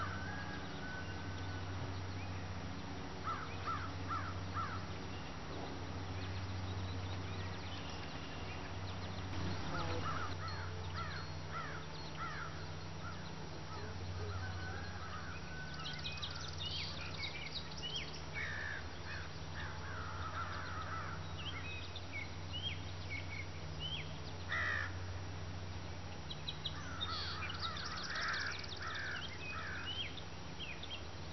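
Outdoor ambience of birds calling repeatedly in short clusters, over a steady low hum.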